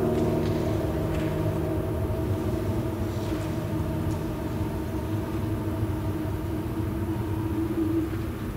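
A baritone holds one long sung note with vibrato over sustained piano chords, slowly easing in loudness.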